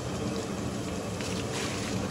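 Water thrown from a bucket splashing onto concrete steps, the splash loudest near the end. A steady low hum runs underneath.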